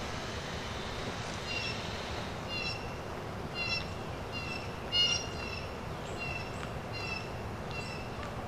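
An animal's short, high-pitched call, repeated a little more than once a second from about a second and a half in, over faint steady background noise.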